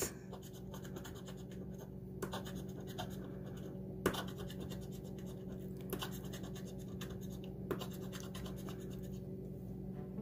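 A metal bottle opener scraping the latex coating off a scratch-off lottery ticket in many short, irregular strokes, one sharper scrape about four seconds in, over a steady low hum.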